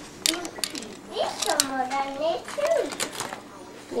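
A young child's voice, with light clicks and clinks of glass Christmas ornaments being handled in their cardboard tray, a few early on and more near the end.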